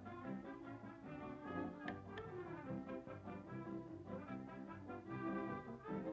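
Orchestral cartoon score led by brass, playing a lively tune with changing notes, with two short ticks about two seconds in.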